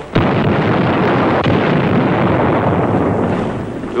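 A large explosion from an explosive charge blowing up a dug-in enemy position. It begins with a sudden blast and runs on as a continuous rumble for nearly four seconds, slowly fading.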